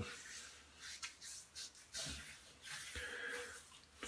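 Hands rubbing over a wet, partly shaved scalp to feel for missed spots: several faint, soft swishes about once a second.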